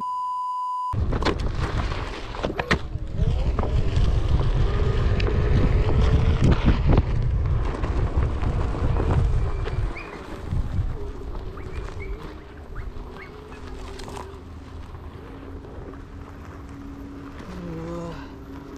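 A short steady test-tone beep, then an electric one-wheel board with a SuperFlux hub motor climbing a steep dirt-and-gravel slope. A loud rumble of the tyre rolling over the ground lasts for the first several seconds. After about ten seconds it eases to a lower rumble with a faint steady motor whine under load.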